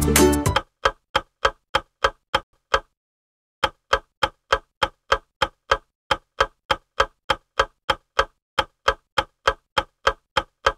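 Background music stops about half a second in, then a ticking-clock sound effect runs at about three ticks a second, with one short pause near three seconds in. It is a quiz countdown timer running down to the end of answer time.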